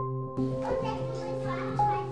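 Electronic music with steady, sustained keyboard tones. About half a second in, a sampled recording of children playing and chattering is layered over it.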